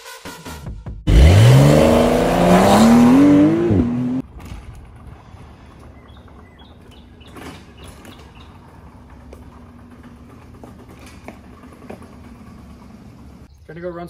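Porsche 911 engine revving hard under acceleration, its pitch climbing for about three seconds with a brief dip partway, then cutting off sharply. A much quieter steady hum follows.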